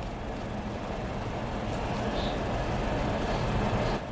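Steady room noise with no speech: a low rumble and hiss that grows slightly louder over a few seconds.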